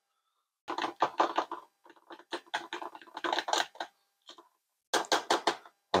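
Metal fork stirring a thick flour-and-water dough starter in a plastic container, clicking and scraping against the container's sides in quick runs of strokes with short pauses between.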